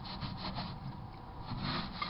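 Brillo steel-wool soap pad scrubbing the inside of a microwave oven in quick, repeated back-and-forth strokes, rasping at dried-on egg residue.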